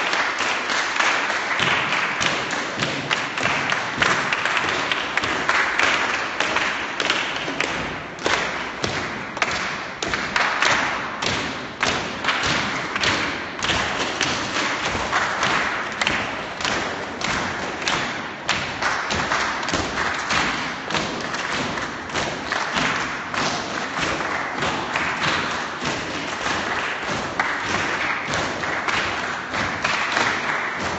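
A crowd clapping hands together in a steady shared rhythm, with the thud of feet on a hard floor as they walk.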